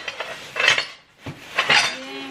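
Broken pieces of a pumpkin-shaped jar clinking and rattling as they are handled in their packaging, in two short bursts about half a second and a second and a half in. The jar arrived broken in shipping.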